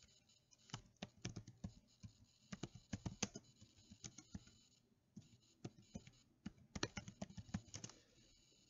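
Faint typing on a computer keyboard: two runs of quick keystrokes with a short pause about halfway through.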